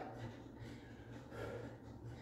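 Faint breathing of a man winded from a set of push-ups, one soft breath about one and a half seconds in, over a low steady hum.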